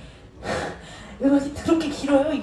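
A woman's voice through a PA microphone: a breathy sound about half a second in, then a short run of voice sounds with no clear words from just over a second in.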